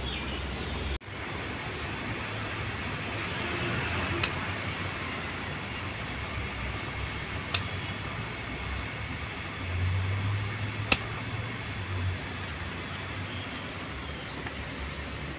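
Scissors snipping okra pods from the stalk: three sharp snips a few seconds apart over steady outdoor background noise.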